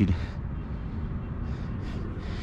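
Wind buffeting the microphone: a steady low rumble in a strong wind, with two soft breaths near the end.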